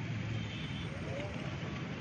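Steady rushing background noise with a man's voice reciting faintly, between phrases of a chant.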